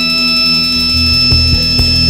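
A live rock band playing: a steady held chord sustains, and low bass notes come in just under a second in, played in a loose rhythm.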